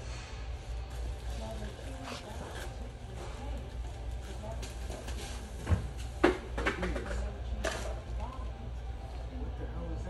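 Large store's background sound: a steady low hum with faint indistinct sounds, broken by a few sharp knocks around six seconds in and again nearly two seconds later.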